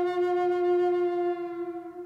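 Native American–style wooden flute, made by Dr Richard Payne, holding one long steady note that fades toward the end.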